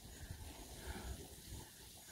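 Faint, unsteady low rumble of wind buffeting the microphone, under a soft even hiss.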